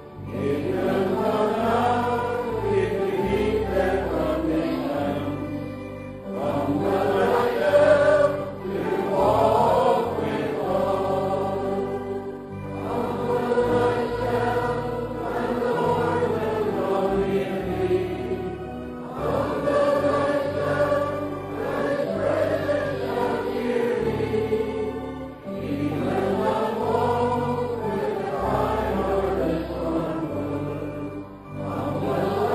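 A choir singing a slow worship song in phrases a few seconds long, over sustained low bass or keyboard notes that change from chord to chord.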